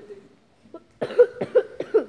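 A quick run of about five short, loud vocal bursts from a person close to the microphone, starting about a second in after a near-quiet first second.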